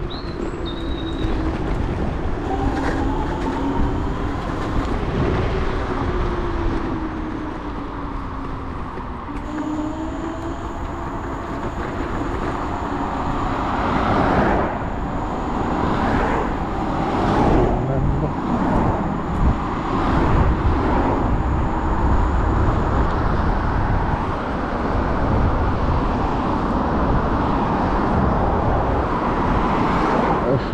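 Wind rush and road rumble from a Dualtron Thunder electric scooter riding at speed, with a faint tone that glides up and down in pitch through the first ten seconds. From about halfway, several cars pass close by, each a short rising and falling whoosh.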